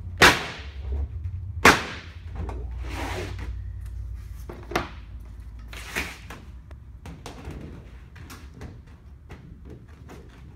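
Dutchman hand snips cutting a circle out of sheet metal: a series of sharp snips at irregular intervals, the two loudest in the first two seconds.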